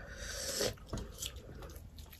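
Faint mealtime sounds: dal poured from a steel ladle onto rice, with a few small clicks of the ladle against steel dishes.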